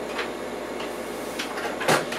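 Test leads and probe cables being handled and moved, with a few faint ticks and one sharp click near the end, over steady background hiss.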